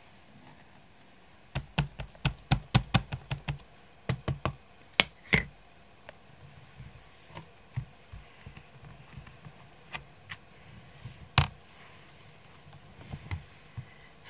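Rubber stamp and Stamparatus stamp positioner handled on the work surface: a quick run of about ten light taps in the first few seconds, a few louder clicks after, then scattered soft clicks with one sharp click near the end.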